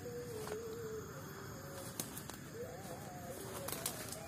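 Spotted dove cooing faintly: a low, slightly wavering coo that ends about a second in and another about two and a half seconds in, over faint clicks of twigs and leaf litter underfoot.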